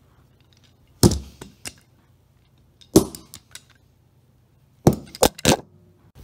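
A cardboard shipping box being struck hard: five sharp blows, one about a second in, one near three seconds, and three in quick succession near the end.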